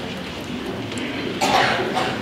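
A single loud cough close by about one and a half seconds in, over low murmuring from the audience.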